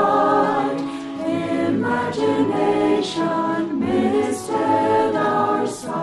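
A choir singing a song with words, several voices holding and changing sustained notes together.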